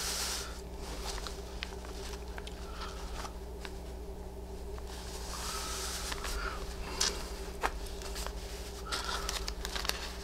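Paper and fabric rustling and sliding as hands smooth and shift appliqué pieces and a paper pattern on a tabletop, with two sharp taps about two-thirds of the way through. A steady low hum runs underneath.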